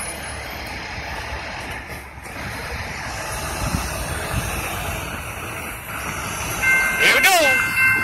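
Road traffic noise, then about seven seconds in the railroad crossing signal activates and its warning bell starts ringing as a steady high tone, the sign of an approaching train.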